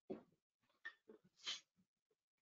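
Near silence broken by a few faint, brief breaths, the loudest near the start and about one and a half seconds in.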